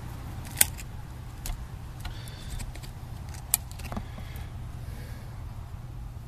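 Needle-nose pliers handling the fuel hose and small inline fuel filter of a generator engine that is not running. Two sharp metallic clicks, one shortly after the start and one midway, with fainter handling noises between, over a steady low hum.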